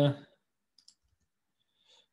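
A man's drawn-out 'uh' fades out, then near silence broken by a few faint, short clicks from typing on a laptop keyboard.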